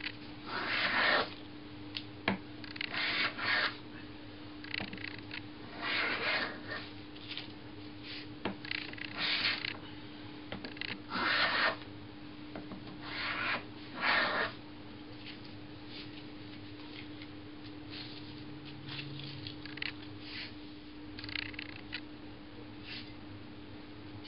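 Rider No. 62 low-angle jack plane cutting shavings from a board, about nine separate strokes, each under a second, through the first fifteen seconds. After that only fainter small handling sounds are heard over a steady low hum.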